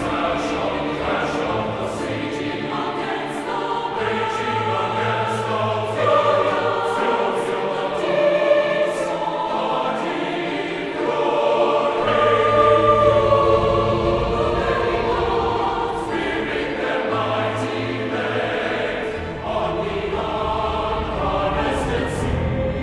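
A choir singing a contemporary classical choral piece in sustained, overlapping vocal lines, swelling louder about halfway through.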